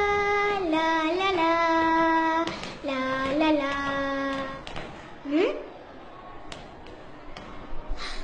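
A child singing a few long held notes that step downward in pitch, ending a little past the middle with a short rising swoop. Faint clicks follow in the quieter last part.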